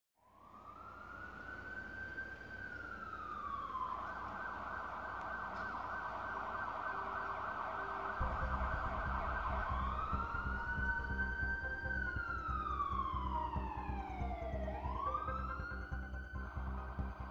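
Emergency-vehicle siren wailing, fading in, its pitch rising and falling slowly, with a faster wavering stretch in the middle. A deep steady rumble comes in about halfway.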